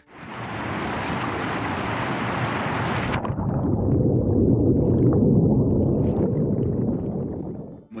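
Turbulent river current recorded by a camera riding in it: a loud, bright rush of whitewater that is cut off sharply about three seconds in as the camera goes under. What remains is the muffled, low churning of water heard underwater.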